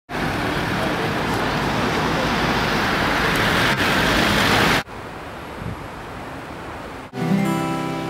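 A loud, steady rush of noise that cuts off abruptly about five seconds in, leaving a quieter background hush; near the end an acoustic guitar starts strumming chords.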